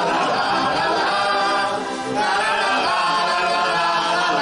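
A group of women singing a folk song together in chorus, with a short break between phrases about halfway through.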